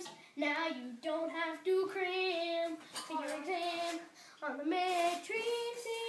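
A boy singing in short phrases of held, pitched notes, with a brief pause about four seconds in.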